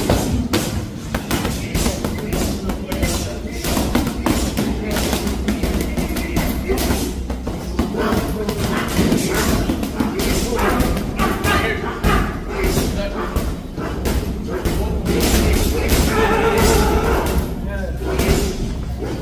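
Boxing gloves striking focus mitts in quick combinations, a run of sharp thuds, over background music with vocals.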